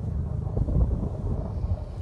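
Wind buffeting the microphone: an irregular low rumble with no steady pitch.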